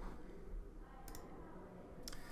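Quiet room tone with a low hum, and a single faint click about a second in.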